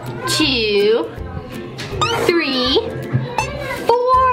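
A high, cartoonish voice drawing out counted numbers as long swooping notes that dip and rise, about one every two seconds, over background children's music.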